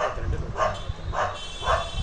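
A dog barking repeatedly, four short barks about half a second apart.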